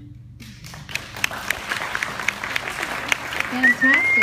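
Audience applause that builds from about half a second in, with a voice starting near the end.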